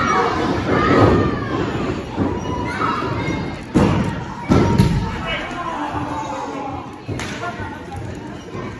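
Heavy thuds on a wrestling ring's mat: a body lands hard about a second in, then two sharp slams on the mat come under a second apart near the middle, over crowd chatter.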